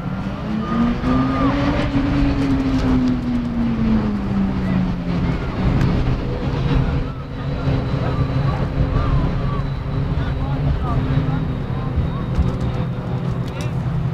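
Motor vehicle engine, its pitch rising over the first two seconds and then falling away, over a steady low hum.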